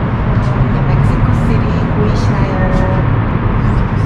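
Steady low rumble of city traffic heard from high above, with a constant hiss.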